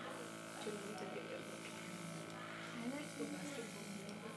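A steady electrical buzz, with faint, indistinct voices talking quietly over it.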